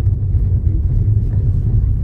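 Steady low rumble of a car's cabin while driving down a road: tyre and engine drone heard from inside the vehicle.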